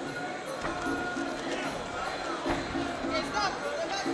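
Traditional Muay Thai fight music with a steady, repeating beat and a wavering high melody, over the shouting of an arena crowd.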